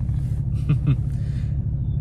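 Steady low road and engine rumble heard inside a moving vehicle's cabin, with a brief voice sound a little under a second in.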